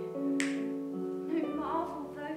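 Live piano accompaniment playing slow, held chords, the chord changing near the start and again about a second and a half in, with a sharp click about half a second in.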